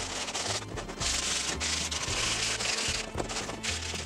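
Sandpaper rubbed by hand along the edges of a laser-cut purse, rounding and smoothing them, in rasping strokes that are loudest in the middle.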